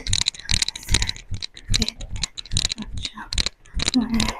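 Sneakers stepping quickly in place on an exercise mat: a quick, uneven patter of light footfalls, about four a second.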